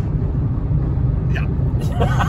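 Steady low rumble of road and engine noise inside a car's cabin at motorway speed.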